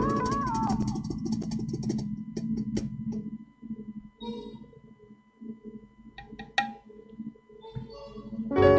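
Live band keyboard chord, its pitch bending, fading out over the first second or two, followed by a lull with a faint steady high tone and a few scattered knocks and clicks.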